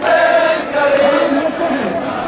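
Crowd of men chanting together in unison, a melodic Shia mourning chant for Arbaeen sung in long held notes.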